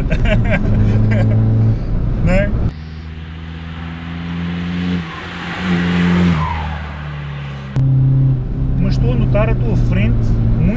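Tuned VW Bora 1.9 TDI four-cylinder diesel pulling hard at about 4,000 rpm, heard as a steady drone inside the cabin. About three seconds in, the sound cuts to the roadside as the car drives past, its note rising and then falling, with tyre hiss. Near eight seconds it cuts back to the cabin drone.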